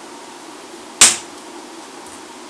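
Bonsai shears snipping through a branch of a five-needle (Japanese white) pine bonsai: one sharp click about a second in.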